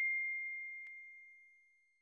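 The tail of a single bell 'ding' sound effect: one clear, high ringing tone fading steadily away and dying out about a second and a half in. A faint click comes a little under a second in.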